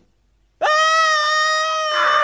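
A CGI pig character screaming: one long, loud, high-pitched shriek held at a steady pitch, starting abruptly about half a second in.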